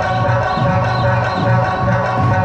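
Live Okinawan Eisa folk music from the sanshin-playing jikata, with a steady beat pulsing about twice a second.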